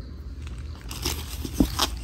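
Clear plastic wrapping crinkling and rustling as it is handled, starting about a second in, with a couple of sharper crackles near the end.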